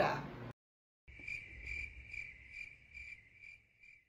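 Cricket chirping sound effect, a steady high-pitched chirp repeated about seven times at two to three a second. It starts about a second in, after half a second of dead silence, and cuts off at the end: the stock gag that marks an awkward pause with no answer.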